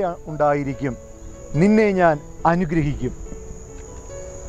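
Crickets trilling steadily at a high pitch behind a man's voice speaking in three short phrases.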